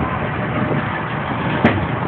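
Steady engine and road noise of a white stretch party bus on a city street, with one short click about one and a half seconds in.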